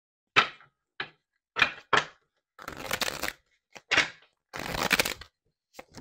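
Tarot card decks being handled on a table: a handful of sharp, short knocks as decks are picked up and put down, with two stretches of cards being shuffled, about a second each, in the middle and near the end.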